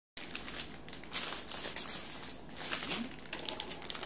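Plastic wrapper of a Samyang instant-noodle packet crinkling as it is handled, in short irregular rustles.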